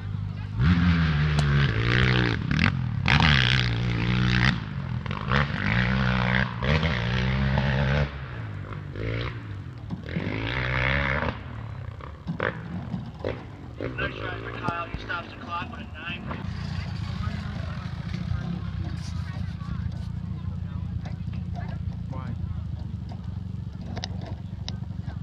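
Indistinct talking, loudest in the first eight seconds, over a steady low hum of dirt bike engines running.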